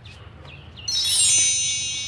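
About a second in, a quick rising sweep of high metal chimes begins. It is a chime sound effect, and the many tones ring on together and slowly fade.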